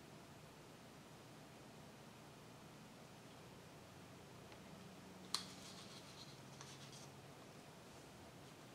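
Near silence: room tone, with one faint sharp click about five seconds in and light scraping for a second or two after it.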